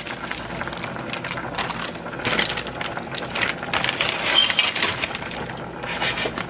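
Frozen spinach being shaken out of its bag into a steaming steel pot: a run of irregular crackles and ticks as the frozen clumps and packaging are handled.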